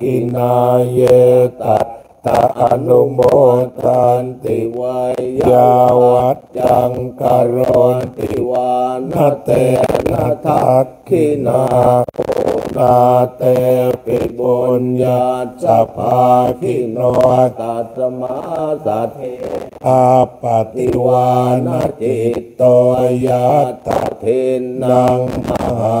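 Thai Buddhist monks chanting Pali verses in unison, a steady low monotone broken only by short pauses for breath.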